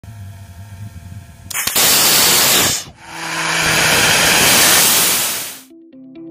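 Small homemade hybrid rocket engine firing on a test stand: a loud, steady rushing hiss starts suddenly about a second and a half in, breaks off briefly near three seconds, then runs again and fades out near the end. A low hum comes before it.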